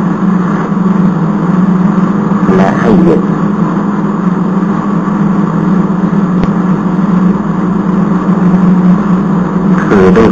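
A loud, steady low hum under a hiss that runs without a break. A brief voice-like sound comes through about two and a half seconds in.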